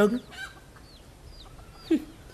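Faint bird calls in the background: several short, high chirping calls, then one louder, falling call near the end.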